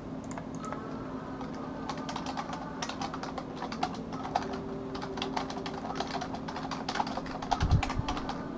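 Typing on a computer keyboard: a quick run of key clicks that starts about two seconds in and keeps going, with a couple of low thumps near the end.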